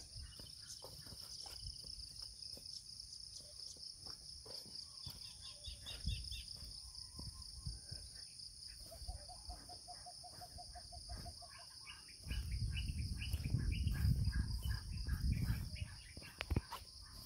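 Steady high-pitched buzzing of insects, with a short run of rapid, evenly repeated calls in the middle. A louder low rumbling noise comes in for the last four seconds.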